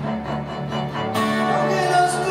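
Live acoustic instrumental music: an acoustic guitar played over sustained low notes with a gentle pulse. About a second in, a brighter layer of held higher notes comes in.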